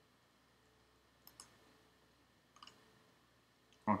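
Computer mouse clicking faintly: two quick pairs of clicks, about a second and a half apart.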